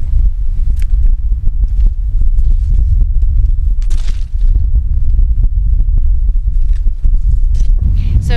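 Wind buffeting the microphone as a heavy low rumble, with scattered crackles and rustles of dry brush and footsteps underneath; a brief rustling hiss about halfway through.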